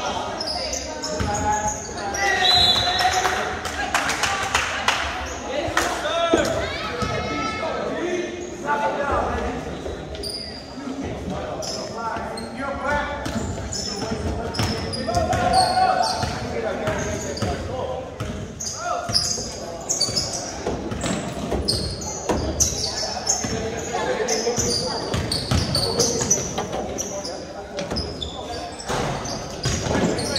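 A basketball being dribbled on a hardwood gym floor, with repeated bounces, amid indistinct voices of players and spectators echoing in a large gym.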